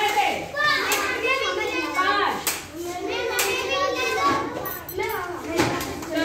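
Several children's voices talking and calling out at once, a steady overlapping chatter.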